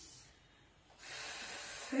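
A woman's audible breath, an airy rush of about a second beginning halfway through, taken on the cue to breathe in during a Pilates abdominal exercise.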